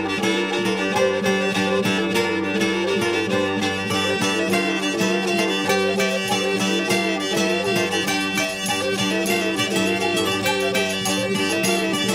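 Instrumental French folk music in medieval style: a fiddle-like bowed melody over a steady low drone, with plucked strings keeping a regular pulse.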